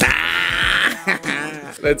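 Laughter: a loud, high, wavering laugh for about the first second, then shorter broken bursts of laughing, just as the rock-paper-scissors round ends.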